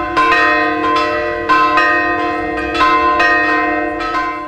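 Orthodox church bells ringing: several bells of different pitch struck again and again in quick, irregular succession, their tones overlapping and hanging on.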